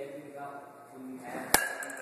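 A baseball bat hitting a ball off a batting tee: one sharp crack about one and a half seconds in, with a short ring after it.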